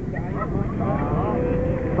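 Quieter voices talking over a steady low rumble, with a steady hum setting in a little past halfway.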